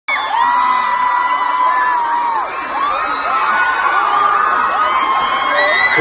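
A concert crowd screaming and cheering: many high voices hold long, wavering shrieks that overlap without a break.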